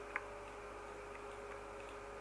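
A single sharp computer mouse click, shortly after the start, over a steady faint electrical hum.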